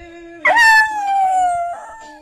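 English bull terrier howling: one long howl that starts sharply about half a second in and slowly slides down in pitch before fading near the end.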